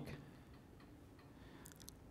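Near silence: faint room tone in a hall, with a few faint ticks near the end.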